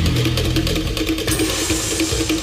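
Tense TV-drama background score: a held, pulsing tone over a noisy rushing texture, with a hiss that swells about one and a half seconds in.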